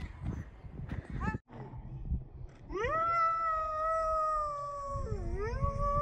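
A child's voice holding one long, high 'whooo' for about four seconds, starting about halfway in, with a dip and rise in pitch near the end.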